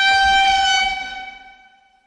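A horn-like sound effect: one steady, pitched blast that holds for about a second and then fades out.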